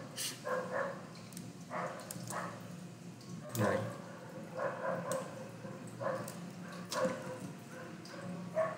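An animal's short yelping calls, about a dozen at irregular intervals, over a low steady hum, with a few sharp clicks.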